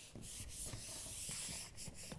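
Backing paper being peeled steadily off a self-adhesive PVC lampshade panel as fabric is pressed onto it: a continuous hissing rustle that dies away near the end.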